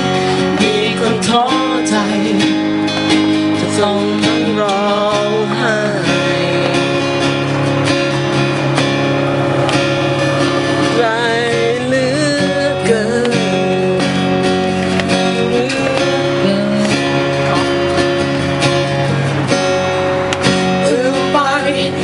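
A man singing a song into a microphone to strummed acoustic guitar, his voice wavering on held notes.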